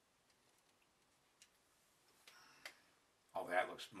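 Quiet handling noises: a few light clicks and a brief soft rustle of the photo-paper cap bill being handled on the clay bust. A man's voice starts near the end.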